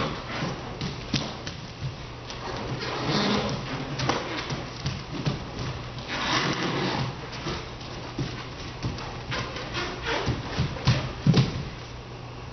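Bare feet stepping, thumping and sliding on a dance-studio floor in an irregular run of knocks and brushes, with a few louder thumps near the end, over a steady low hum.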